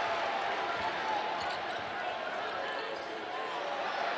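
Steady arena crowd noise, with a basketball being dribbled on a hardwood court.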